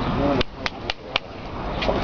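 Four quick, sharp slaps in a row, about a quarter second apart: a hand smacking the back of a man's neck in mock blows.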